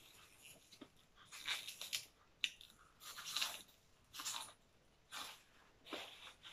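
A person chewing crunchy food close to the microphone: faint crunches roughly every second, with breaths between them.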